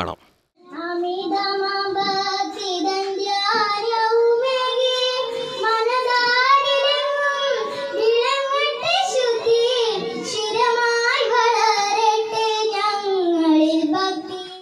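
A young girl singing solo into a microphone, starting about half a second in, with long held, wavering notes.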